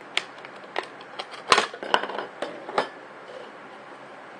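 Knife blade cutting through a thin plastic one-litre bottle, the plastic giving a series of sharp crackles and clicks over the first three seconds, loudest about a second and a half in.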